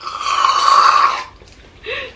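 Aerosol whipped cream can spraying straight into a mouth: a hiss of a little over a second that then cuts off.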